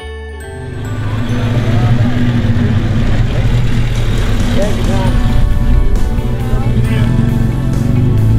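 Engine of a classic open-top sports car running close by, a steady low drone that comes in about half a second in, with background music continuing underneath.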